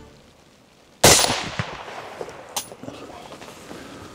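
A single hunting-rifle shot about a second in: a sudden sharp crack whose echo fades over about a second. A fainter sharp tick follows about a second and a half later.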